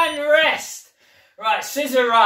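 A man's voice speaking two short phrases. The second begins about a second and a half in, after a brief pause.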